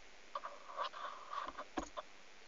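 Faint rustling and light taps of paper scratchcards being handled and pushed about on a table, with a couple of sharper small clicks near the end.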